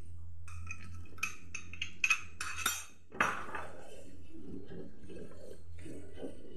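A spatula scraping and knocking against a steel kadai while milk custard is stirred, in a run of short strokes with one sharp, louder knock about three seconds in. A low steady hum runs underneath.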